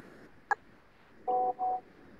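Music cuts off abruptly, then a single sharp click about half a second in, followed by two short electronic beeps in quick succession, each holding the same pair of steady tones.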